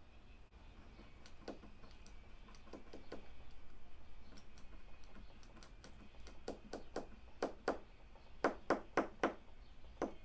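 Light clicks and taps of small objects handled on a tabletop: a few scattered at first, then a quick run of sharper taps in the last few seconds.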